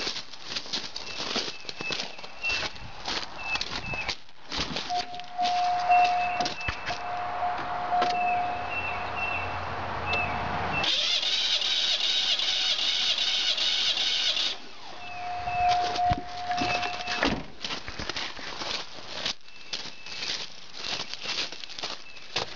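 Car engine cranked over by its starter for about four seconds with the spark plugs out and the fuel and ignition disconnected, spinning it to build pressure on a compression gauge. A steady electronic tone sounds before and after the cranking, with handling clatter and footsteps around it.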